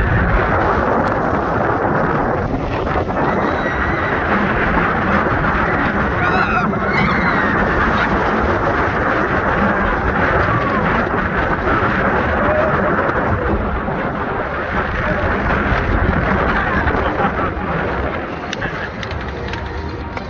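Steel roller coaster train running at speed on its track, a steady rumble under heavy wind rushing across the microphone. The noise eases near the end as the train slows.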